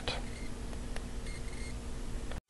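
Low room tone: a steady faint hum with a faint click about a second in, typical of a handheld camera's own noise in a small room.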